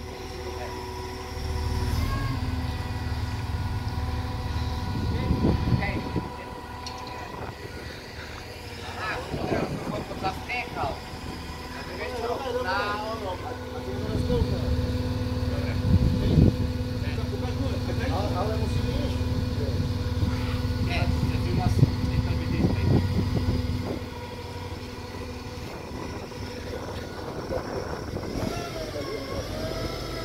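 Forklift engine running steadily while it holds a car up on its forks. It grows louder in two stretches, a short one near the start and a longer one in the middle, as it works under load.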